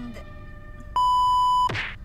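A single electronic beep: one loud, steady high tone lasting under a second, which ends in a quick falling swoosh.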